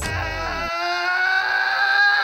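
A man's long, drawn-out yell held on one high pitch, beginning just under a second in as a falling low tone dies away.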